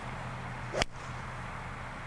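Golf club striking a ball: a single sharp crack a little under a second in, over a steady low background hum.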